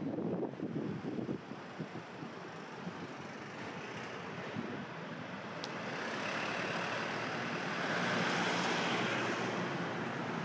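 A motor vehicle passing on a city street: its road and engine noise swells from about halfway through, is loudest near the end, then begins to fade. Wind buffets the microphone briefly at the start.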